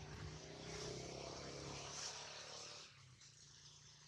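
Faint, distant engine with a low steady hum, swelling over the first two seconds and fading out just before the end.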